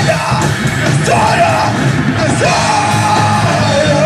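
Rock band playing live through a PA: electric guitars and drums, with a vocalist singing and yelling over them.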